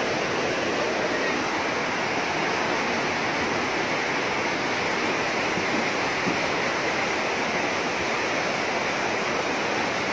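Fast, muddy river rushing over rocks in rapids: a steady, loud wash of water noise that does not let up.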